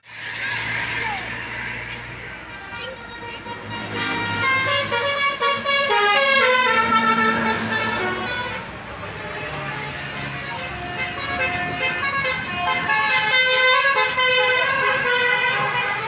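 A bus's multi-note musical air horn (a 'basuri' telolet horn) playing a stepping tune, in two runs: one starting about four seconds in and another in the second half, over passing traffic.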